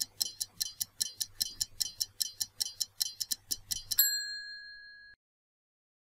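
Stopwatch ticking sound effect, about five ticks a second, counting down the time to answer. About four seconds in it ends with a single bell ding marking time up, which rings for about a second and then cuts off.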